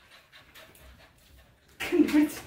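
A dog panting softly and rhythmically, with a short, louder sound near the end.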